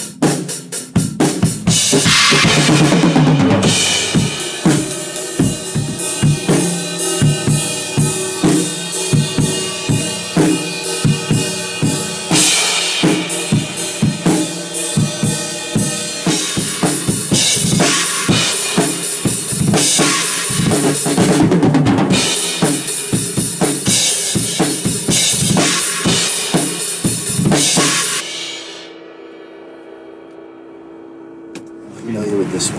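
Acoustic drum kit played hard in a steady, fast rock/metal beat: kick drum and snare under repeated crash-cymbal washes. The playing stops about a second and a half before the end, leaving a faint steady hum.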